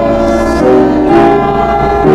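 Congregation singing a hymn with piano accompaniment, held chords changing every half second or so.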